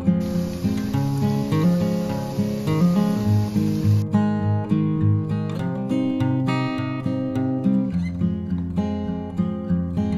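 Instrumental background music with steady pitched notes. Under it, for about the first four seconds, the hiss of dough frying in hot oil, cutting off suddenly.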